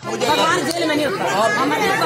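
A group of men and women talking loudly over one another in an argument, many voices overlapping at once.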